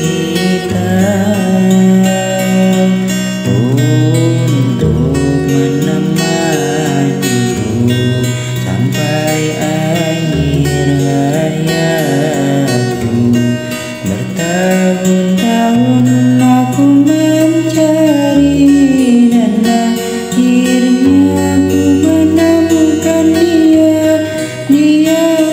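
Song with acoustic guitar chords and a voice singing a melody in Indonesian.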